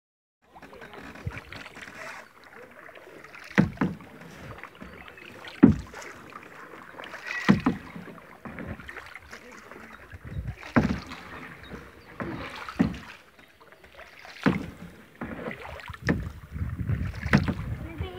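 Kayak paddling: the blades of a double-bladed paddle dipping into and pulling through calm river water, a sharp stroke about every two seconds.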